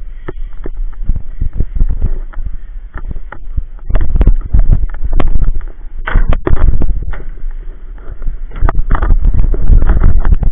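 Inline skate wheels rolling over rough, cracked asphalt: a loud, uneven rumble full of sharp clicks and knocks, rising in several louder surges.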